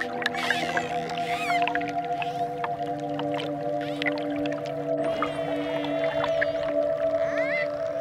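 Dolphin whistles, rising and falling squeals with scattered clicks, laid over a steady sustained chord of calm synthesizer music. The whistles crowd together in the first two seconds and again near the end.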